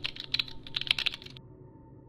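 Computer keyboard typing: a quick, uneven run of key clicks that stops about a second and a half in.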